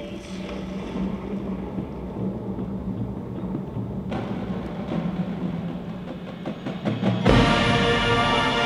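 Marching band opening: quiet, sustained low tones with percussion from the front ensemble, thickening about halfway through, then the full band comes in loudly with a sudden swell of brass about seven seconds in.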